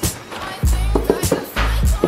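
Background music with a deep bass note pulsing about once a second, over a beat with sharp hits.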